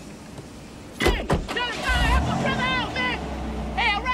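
A car door slams shut about a second in, then the car's engine runs with a steady low hum under a man's muffled shouting.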